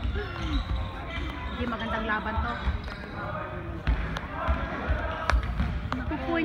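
A basketball bouncing on a gym floor several times at uneven intervals, with people talking nearby.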